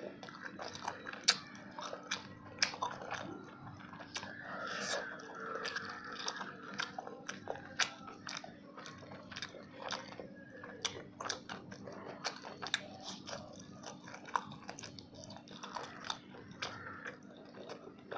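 Close-miked eating by hand: biting and chewing fried fish, with frequent sharp crunches and wet mouth clicks. A low steady hum runs underneath.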